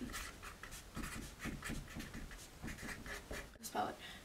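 Felt-tip marker writing a word on a paper sheet: a quick run of short scratching strokes.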